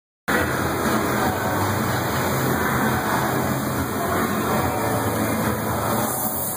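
Steady machinery noise of a fabrication shop around a CNC cutting table, an even rush with a low hum beneath it, before the torch starts cutting.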